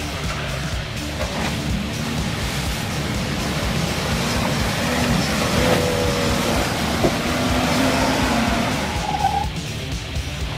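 A Nissan Patrol GQ four-wheel drive's engine revving under load as it drives through deep mud, its tyres throwing mud, with rock music mixed over it.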